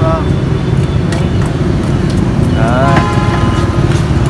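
Steady low outdoor rumble with brief snatches of people talking, near the start and again about three seconds in.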